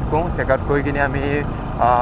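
A person's voice talking over the steady running of a Bajaj Pulsar RS200 motorcycle and its road and wind noise.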